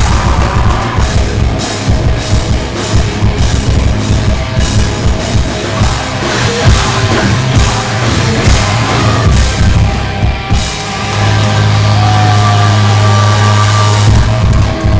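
Heavy metal band playing loud: distorted guitars, bass and drum kit hitting hard and fast. About eleven seconds in, the drumming thins out and a low chord is held and left ringing to the end.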